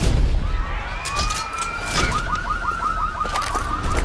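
A siren-like alarm tone rises over about a second, then holds and warbles rapidly, over a steady low rumble. Sharp hits land at the start and about halfway through.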